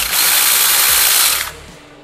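Cordless battery-powered mini chainsaw with a 15 cm bar running free, an even high-pitched whir of motor and chain that cuts off about one and a half seconds in.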